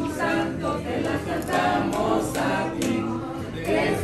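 A group of people singing together in chorus, a birthday song for the boy at the table.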